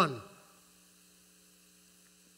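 A man's last spoken word trails off into the room's echo. Then only a faint, steady electrical mains hum remains.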